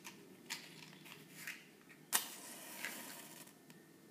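Matchbox handled with a few clicks and scrapes, then a wooden match struck on the box about two seconds in: a sharp scratch that flares into a hiss for about a second and a half as the match head ignites.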